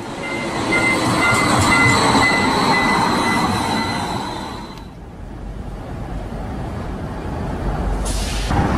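Modern streetcar running along street track, its rumble carrying a steady high whine for about the first five seconds. The sound then breaks to a quieter, even outdoor noise.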